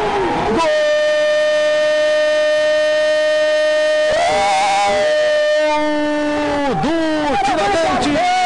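Football commentator's drawn-out goal call, one long held 'gooool' shout of about six seconds that swells about four seconds in and drops in pitch as it breaks off, celebrating a goal.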